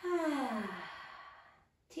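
A woman's audible sighing exhale, voiced at first with its pitch falling steadily, then trailing off into breath after about a second.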